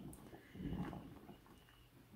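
A faint, brief sound from a ladle moving through a pot of soapy water near the boil, about half a second in.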